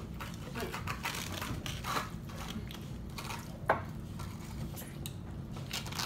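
Forks and spoons tapping and scraping on plates and cups as people eat, with scattered light clicks and one sharper click a little past halfway, over a steady low hum.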